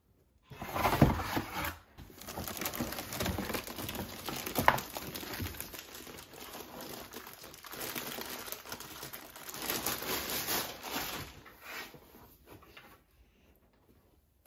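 Clear plastic packaging bag crinkling and rustling as an air purifier is unwrapped by hand, with a few sharper crackles, dying away near the end.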